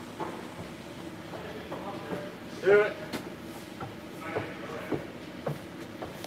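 A person's short vocal sound about halfway through, over a low steady background hum, with scattered light knocks and clicks.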